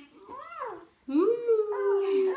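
A toddler's wordless vocal sound: a short rising-and-falling murmur, then about a second in a long drawn-out note that slowly falls in pitch, with another voice chiming in over it.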